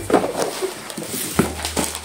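Parcels being unboxed by hand: a knife scoring packing tape on a cardboard box, with cardboard and plastic packaging rustling and knocking in a few short, sharp noises near the start and again about one and a half seconds in.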